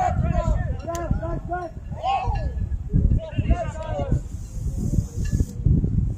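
Raised voices of people shouting and calling out during a soccer match, in short bursts over a low, steady rumble, with a brief hiss a little past the middle.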